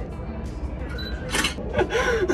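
Photo booth camera shutter sound: one short click about a second and a half in, marking the picture being taken after the countdown.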